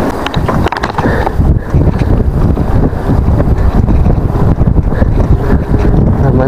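Wind buffeting the action camera's microphone as a KTM Ultra Ride mountain bike rolls along pavement, with a constant low rumble of tyres and wind. A few sharp rattling clicks come in the first second.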